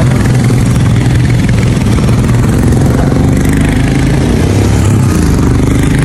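Motorcycle engines running steadily as luggage-laden motorcycles ride past on a dirt track.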